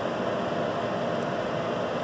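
Steady fan and ventilation noise, an even whoosh with a faint constant hum.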